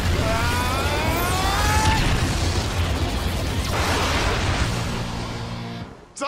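Magical armor-transformation sound effects: a dense, loud rush of noise with a rising whine in the first two seconds, over music, dying away near the end.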